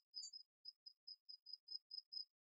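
Near silence, with faint high-pitched cricket chirps repeating several times a second.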